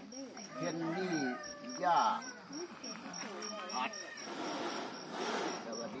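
An insect chirping steadily at a high pitch, about four short chirps a second, under a man's talking.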